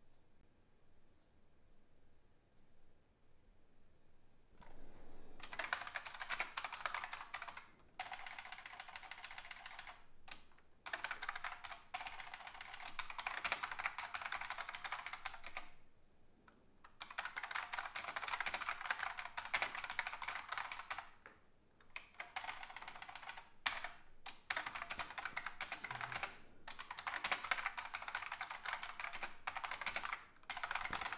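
Fast typing on a computer keyboard in runs of a few seconds with short pauses between them, starting about five seconds in after a few faint clicks.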